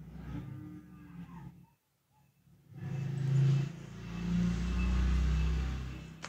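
A man's voice making wordless noises: a short low hum, then, after a pause of about a second, a louder long low drawn-out sound with a fairly steady pitch.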